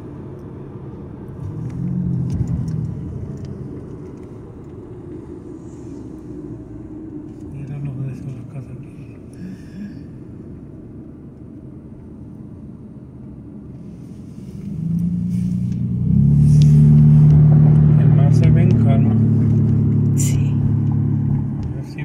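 Car road noise heard from inside the moving car: a steady low rumble that swells into a much louder, steady low hum for the last quarter or so, then eases off near the end.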